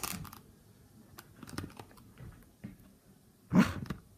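A keeshond gnawing on a toy, its teeth making scattered small clicks and crunches. About three and a half seconds in there is one brief, louder burst of noise.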